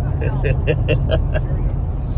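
A person laughing, about six quick 'ha's in a little over a second, over the steady low rumble of road noise inside the cabin of a moving 2022 Jeep Wagoneer.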